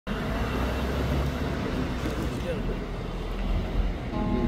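Outdoor street ambience: a steady traffic rumble with indistinct voices.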